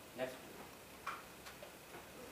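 Quiet lecture-room tone in a pause of speech: a short murmur of the speaker's voice just after the start, then a couple of faint ticks.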